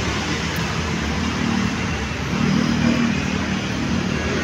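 Street traffic: motorcycles and cars running along the road, a steady low rumble with an engine note swelling slightly in the middle.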